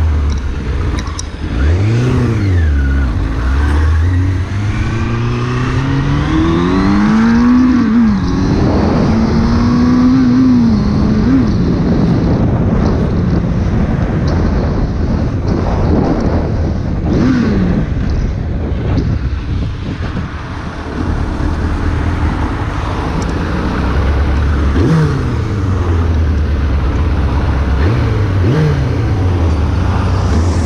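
2001 Suzuki Bandit 600's inline-four engine under way, accelerating through the gears, its pitch climbing and dropping at each shift in the first ten seconds. Later it eases off, with the pitch falling several times near the end, over a steady rush of wind and road noise.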